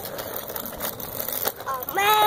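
Radio Flyer tricycle's wheels rolling over rough asphalt, a steady gritty noise with faint clicks. Near the end a short rising vocal sound cuts in.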